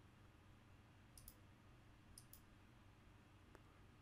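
Near silence broken by a few faint computer mouse clicks, spread about a second apart.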